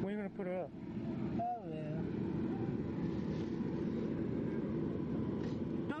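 A motor running steadily with a constant low hum, under brief speech at the start.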